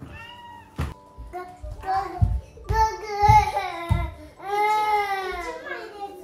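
A toddler's angry, wailing cries: several short high-pitched yells, then one long drawn-out wail that falls slightly in pitch, with a few dull thumps in the middle. He is upset because a toy has been taken from him.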